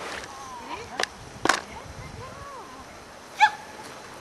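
Faint voices talking in the background, with two sharp knocks about a second and a second and a half in, and one short, loud high-pitched call about three and a half seconds in.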